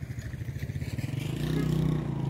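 Motorcycle engine running with a fast, even pulsing note, growing louder in the last half second.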